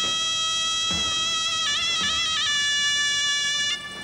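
Greek folk music led by a zurna, a high, reedy double-reed pipe, holding long notes with short ornamental turns in pitch. Soft low beats come about once a second underneath.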